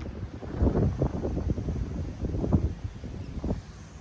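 Gusty wind buffeting the microphone, rising and falling irregularly.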